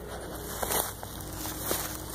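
Footsteps through dry leaf litter and ferns, a few irregular crunches and rustles of brushed vegetation.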